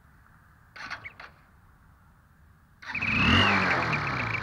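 Honda Unicorn motorcycle's single-cylinder engine starting nearly three seconds in and running at idle, with a whistle fitted in the exhaust silencer. The whistle gives a high, steady note over the engine, wavering at first and then pulsing with the exhaust beats.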